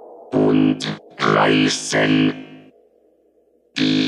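Electronic dance track in a breakdown: a fading tail, then three short distorted synth stabs in quick succession, a near-silent gap about three seconds in, and a fresh stab right at the end.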